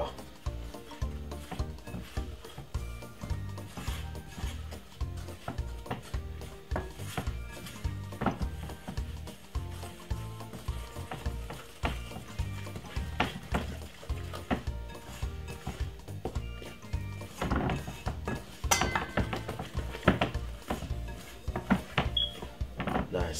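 Background music with a steady low beat over a wooden spoon stirring and scraping a thick flour-and-butter batter in a glass bowl. The spoon knocks against the bowl now and then, most often near the end.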